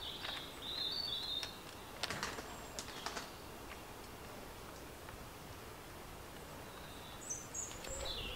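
Faint small-bird chirps at the start and again near the end, with a few light clicks about two and three seconds in from a plastic clamp-type handle mount being screwed tight onto a drone.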